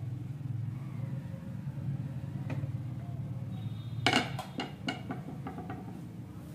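A screwdriver set down hard on a table: a sharp knock about four seconds in, then several lighter taps as it settles, over a steady low background hum.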